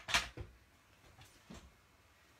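Knocks and light rustles of objects being moved about on a work table while searching for something: a sharp knock at the start, a softer one just after, and faint ones about one and a half seconds in.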